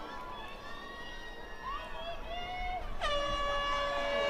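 Crowd members shouting and cheering, then an air horn blasts one steady held note about three seconds in, lasting over a second.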